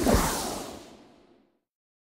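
A whoosh sound effect for the transition, starting sharply and fading out over about a second and a half.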